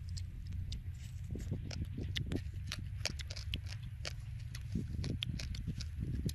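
Wind rumbling on the microphone, with irregular light clicks and ticks, a few every second.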